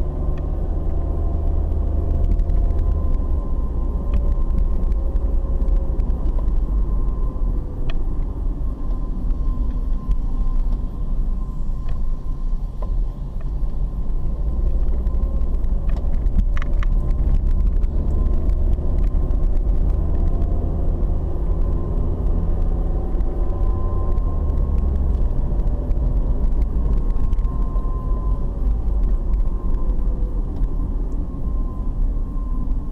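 Steady low rumble of a car driving, with engine and tyre noise heard from inside the cabin and a faint whine that drifts gently in pitch. A short click comes about halfway through.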